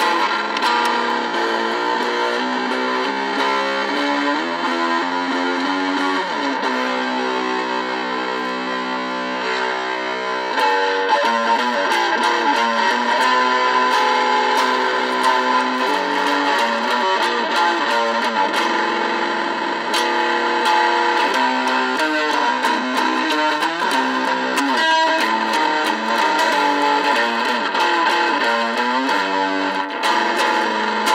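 Electric guitar playing chords and note runs, with a chord held for a few seconds about a third of the way in, after which the playing grows a little louder.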